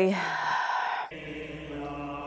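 Sustained choral chanting holding one droning chord, part of a TV drama's soundtrack. A brief noisier wash gives way to the steady chant about a second in.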